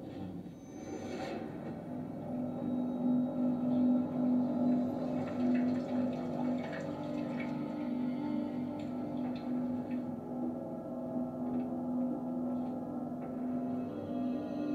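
Dark ambient drone score from a ghost-hunting television programme: a steady low tone that pulses gently, with fainter higher tones over it, growing louder over the first couple of seconds. A few faint ticks sit under it.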